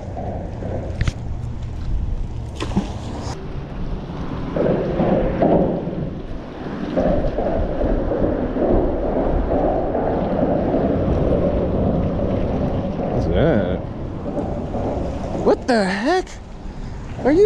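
Wind rumbling on the microphone over a steady outdoor wash of noise, with a short sharp sound about three seconds in.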